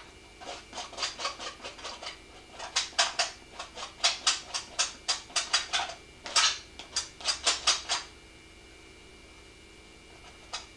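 Quick, rapid up-and-down paint strokes scrubbing on a stretched canvas, about six a second, in short runs that stop about eight seconds in.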